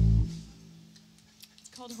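A loud, low electric bass guitar note that is cut off about a quarter second in, leaving a steady low hum from the band's amplified rig.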